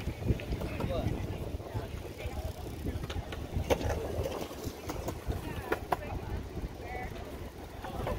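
Wind rumbling on the microphone under indistinct voices talking nearby, with a few sharp clicks.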